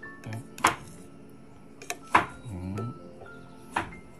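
Background music under three sharp clinks about a second and a half apart, a spoon knocking against a bowl as sauce is stirred, with a short spoken "ừ" near the start.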